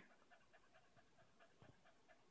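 Very faint, quick and even panting from a cocker spaniel, close to near silence.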